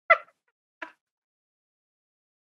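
Two short bursts of stifled laughter from a woman, one just after the start and one about a second in.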